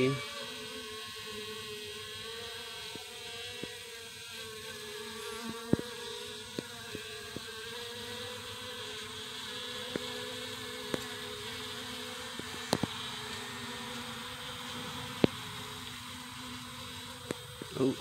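Honeybees buzzing at the hive: a steady hum that holds its pitch throughout, with a few brief sharp clicks scattered through it.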